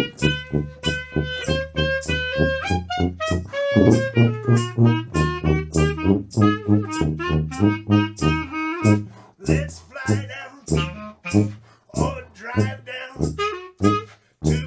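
A two-piece jazz band plays a New Orleans parade tune: a melody line over an evenly pulsing bass. The upper part turns rougher and busier about nine seconds in.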